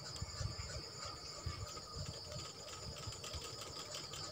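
Faint, steady high-pitched chirring of crickets, with soft irregular low thumps.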